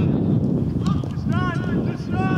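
Wind buffeting the microphone, with a shouted call from the pitch about one and a half seconds in.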